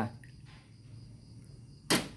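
A small clay teapot set down on a metal tray: one sharp clack near the end, over faint steady insect chirring.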